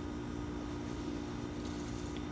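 A steady low hum over an even background rumble, with no distinct crackles or pops.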